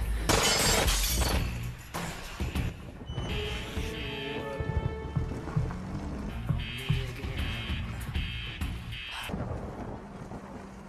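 Film soundtrack: a loud crashing burst in the first second or so, then dramatic score music with short, repeated high pulses.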